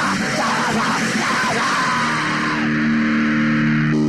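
Crust punk band playing a dense, distorted passage, then ending the song about halfway through on a held, ringing distorted guitar chord.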